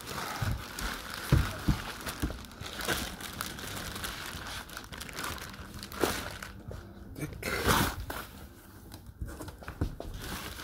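Clear plastic wrapping crinkling and rustling in irregular bursts as plastic-wrapped chair parts are lifted and handled, with louder crackles about six and eight seconds in.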